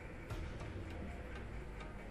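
A few faint, light clicks over low steady room hiss.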